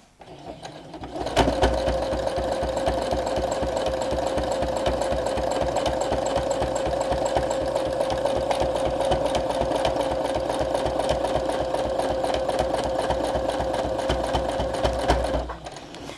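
Brother domestic sewing machine, fitted with a spring-loaded free-motion foot, stitching continuously at a steady speed: rapid even needle strokes over a steady motor whine. It starts about a second in and stops shortly before the end.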